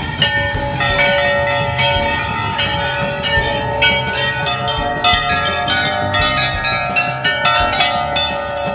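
Many hanging brass temple bells being rung over and over by devotees. Strikes come several times a second and their ringing tones overlap into a continuous clangour.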